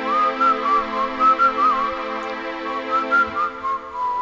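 A man whistling a melody in short, wavering phrases with quick trills, over sustained chords from a Korg Pa5X arranger keyboard.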